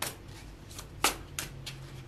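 A deck of tarot cards being shuffled by hand: four short, sharp card sounds, one at the start and three clustered about a second in.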